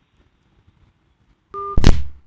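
Telephone line audio: faint hiss, then about one and a half seconds in a short two-tone beep, followed at once by a loud click as the call cuts off.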